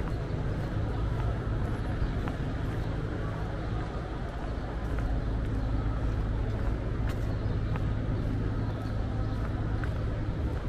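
Steady city-street ambience: a continuous rumble of traffic on the road alongside, with faint voices mixed in.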